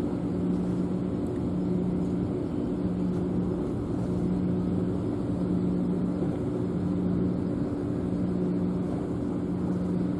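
Steady low mechanical drone of distant harbour machinery, made of a few low tones, one of which pulses about once a second.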